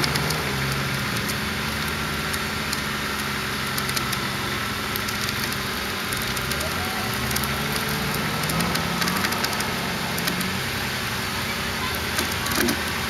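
Off-road 4x4 engines running steadily at low speed, their low tone wandering a little, over a haze of outdoor noise.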